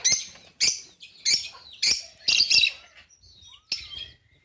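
Birds chirping in short, high-pitched bursts, several in quick succession, then a brief lull and one more chirp near the end.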